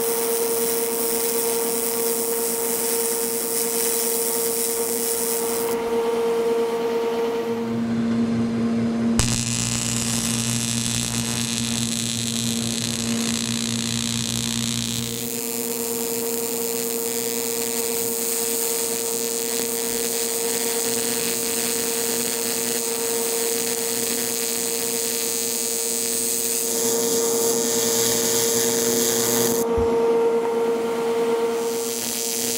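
AC TIG welding arc on an aluminum bike frame: a steady high buzz over a wide hiss. For several seconds about a quarter of the way in, the buzz drops to a lower pitch, then returns to its first pitch.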